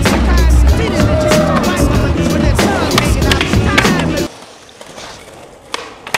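Hip-hop backing track with vocals that cuts off about four seconds in, leaving skateboard wheels rolling on pavement and the snap of a board being popped for an ollie near the end.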